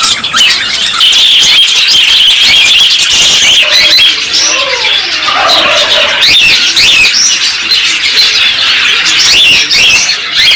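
A flock of caged budgerigars and Java sparrows chattering, with many overlapping short, high chirps throughout. A lower, falling call comes about four to five seconds in.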